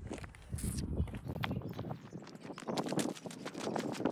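Footsteps of a person walking: a run of short, irregular taps and scuffs.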